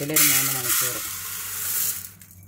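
Raw rice grains poured from a cup into a metal pot, pattering in a steady hiss that stops at about the two-second mark.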